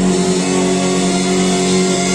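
Music with long held notes.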